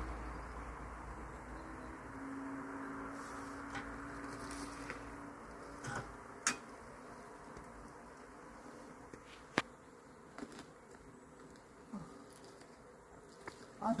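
Honeybees from a swarm buzzing in the open air, one passing close with a steady low hum for a few seconds. A few sharp isolated clicks come later.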